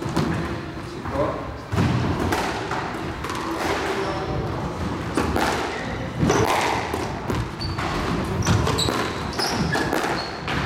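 A squash rally: the ball struck by rackets and hitting the court walls with sharp thuds about every second. Near the end there are short squeaks of shoes on the court floor.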